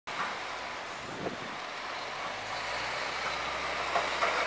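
Snowplow truck approaching with its V-plow blade down in the snow: a steady rushing noise of engine, tyres and blade that grows slowly louder as it nears.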